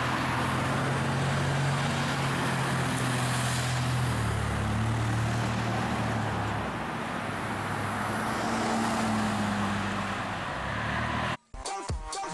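Street traffic: car engines humming low, shifting in pitch a few times, over a steady rush of tyre noise. It cuts off sharply near the end.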